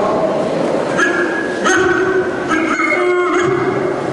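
A person doing a vocal imitation of a dog into a microphone: several short, pitched yelps and whines, roughly a second apart.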